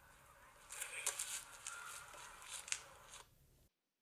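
Faint outdoor sound from a textbook video's soundtrack: scattered scuffing and crunching footsteps on a paved path. The sound cuts off abruptly near the end as the video is paused.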